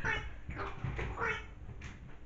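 A pet dog, a cockapoo, whining and yelping as it plays: about three short pitched calls that rise and fall.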